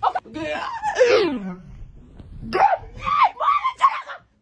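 A person laughing loudly: one long falling cry in the first second or so, then a run of short laughing bursts near the end.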